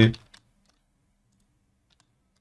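A few faint computer mouse clicks over a faint low steady hum, just after a spoken word ends.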